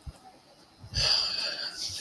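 A man's audible breath drawn in through the mouth, a breathy hiss lasting about a second, beginning after a short near-silence.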